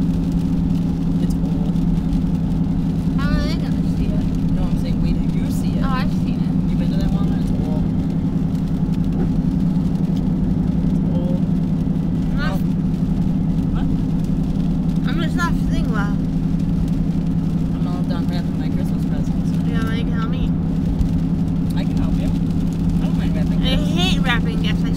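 Steady low drone of engine and road noise inside a moving vehicle's cabin at highway speed, with brief snatches of quiet talk now and then.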